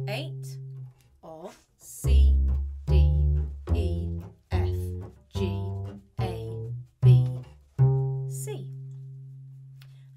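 Double bass plucked pizzicato, running up a C major scale one octave from C to C, about one note a second, the top C left ringing and dying away. A voice counts along with the notes.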